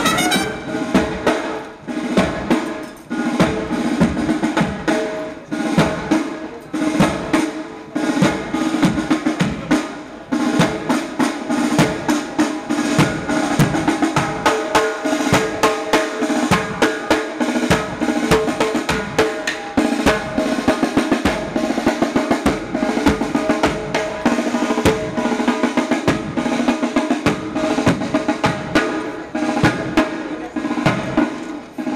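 Marching band's snare and bass drums playing a fast, steady march cadence with rolls, with held brass notes underneath.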